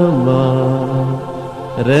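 A man chanting in long, held notes: the pitch steps down just after the start and slides up into the next phrase near the end.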